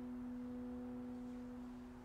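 Background music: a soft, held keyboard chord slowly fading out.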